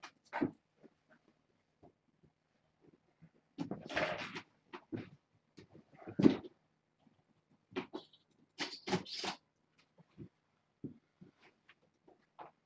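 Kittens mewing in distress from inside pet carriers: short cries come several times, with pauses between.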